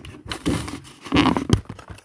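Rustling and scraping with a few sharp knocks, irregular and louder in two bunches about half a second and just over a second in.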